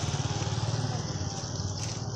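A small engine running with a fast, even low putter.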